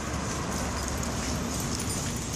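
Steady outdoor background noise with faint footsteps on pavement.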